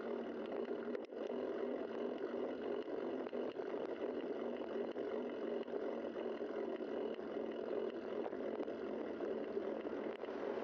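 Steady rushing noise of a bicycle ride heard through a bike camera's microphone: wind over the mic and tyres rolling on asphalt. There is a brief dip with a click about a second in.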